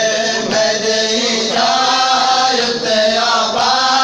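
Group of men chanting a noha (Shia mourning lament) together, with matam: hands slapping on bare chests in time with the chant.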